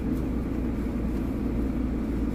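Steady low rumble of a running car, heard from inside its cabin.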